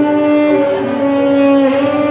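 Tenor saxophone playing a slow melody of long held notes, moving to a new pitch about halfway through and again near the end.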